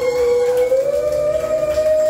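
A woman singing one long held note into a microphone, amplified, sliding slightly higher about a second in.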